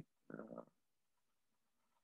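Near silence in a pause between sentences, with one brief faint voiced murmur about half a second in.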